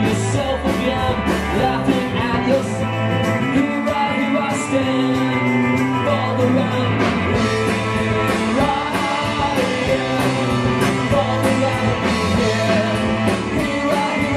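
Rock band playing live, with a drum kit and cymbals keeping a steady beat under sustained instruments.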